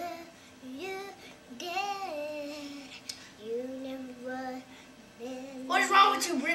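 A child singing a wordless tune in a high voice, with pitch glides and a few long held notes.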